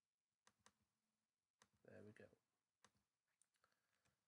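Faint computer mouse clicks, a few of them close double-clicks, as files are picked in a dialog. A brief quiet murmur of a voice comes about two seconds in.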